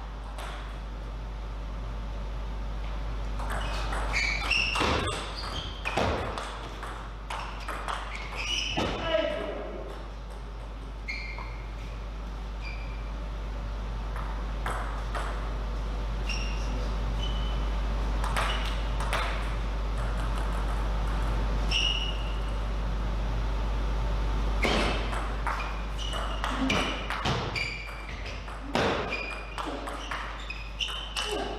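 Table tennis ball struck back and forth by rackets and bouncing on the table in two rallies, a quick run of sharp clicking pings each time, with scattered single bounces between points. A steady low hum runs underneath.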